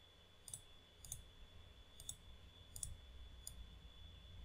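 Five faint, sharp computer mouse clicks, spaced unevenly about half a second to a second apart, over a faint steady high-pitched whine.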